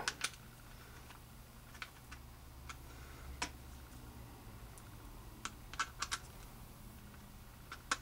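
Small, sharp clicks and taps of a nylon belt clip, screws and a screwdriver being fitted to a Kydex holster shell. There are scattered single clicks with a quick cluster about five to six seconds in, over a faint steady low hum.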